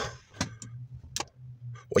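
Two short clicks from the ignition key switch of a 1966 VW Beetle as the key is turned to switch on the electrics without starting the engine, over a faint steady low hum.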